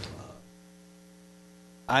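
Faint, steady electrical mains hum in the audio feed, heard once the last word has died away. A man's voice starts again just at the end.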